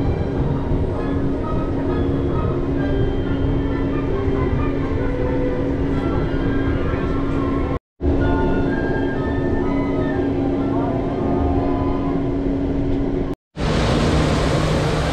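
Monorail car running, heard from inside the cabin: a steady rumble with a constant low hum. The sound drops out abruptly about eight seconds in and again just before the end.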